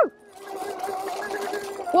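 Oset 24R electric trials bike's motor whining at a steady pitch under a rushing hiss.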